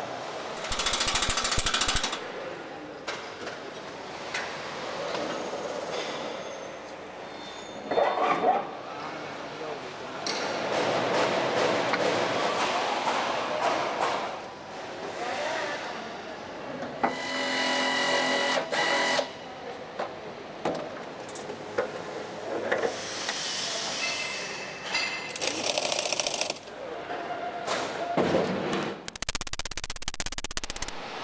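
Workshop noise from assembly work, with tools and metal parts clattering and background voices, changing from clip to clip.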